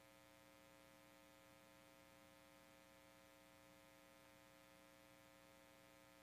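Near silence: only a faint, steady electrical hum.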